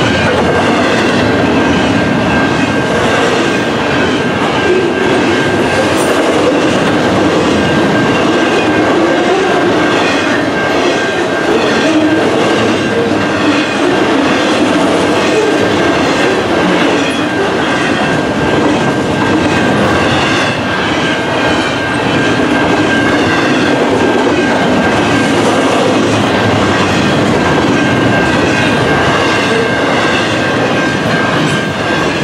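Double-stack container well cars of a long intermodal freight train rolling past: a steady rumble of steel wheels on rail with rhythmic clickety-clack over the rail joints. A steady high-pitched ringing from the level-crossing signal runs under it.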